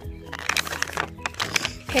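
Crinkling of a plastic lolly bag as it is turned over in the hands, a string of quick rustles from about half a second in, over background music with steady held notes.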